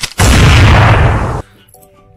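A single loud blast that starts just after the beginning and lasts about a second, then cuts off sharply.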